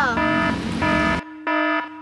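A wrong-answer buzzer sound effect, four short flat buzzes of about half a second each, the first two over a background hiss. The tail of a voice's pitch glide ends just as the first buzz starts.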